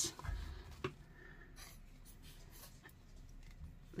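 Faint rustling of paper being handled and pressed flat on a cutting mat, with a light tap at the start and another about a second in.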